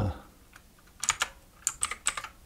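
Computer keyboard keys pressed, a quick run of five or six separate clicks in the second half.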